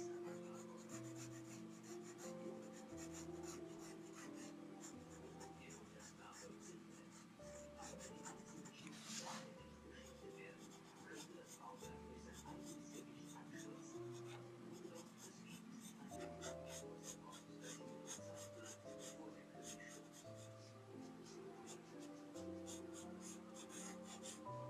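Pencil lead scratching on sketchbook paper in many quick, light strokes, as hair is shaded. Soft background music plays underneath.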